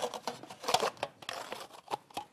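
Plastic packaging of a single-serve instant oatmeal cup crinkling and crackling as it is opened by hand, in a run of irregular short crackles and clicks.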